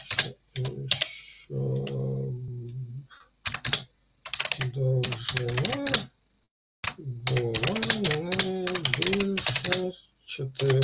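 Typing on a computer keyboard in quick runs of key clicks, with a voice speaking over it in stretches.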